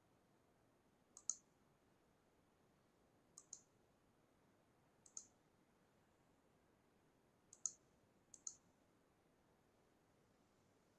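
A computer mouse button being clicked five times at irregular intervals, each click a quick pair of sharp ticks, over near silence.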